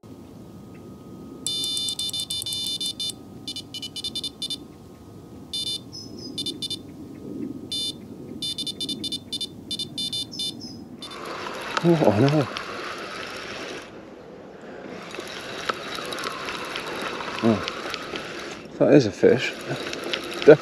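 Electronic carp bite alarm sounding in rapid runs of high beeps as line is pulled off the rod: a fish has taken the bait. After about ten seconds the beeping stops, giving way to rustling noise and a couple of shouts.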